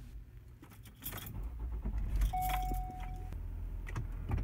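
Keys jangling in a cargo van's ignition, with a single steady beep about a second long near the middle. A low engine hum comes in about a second in and runs on underneath.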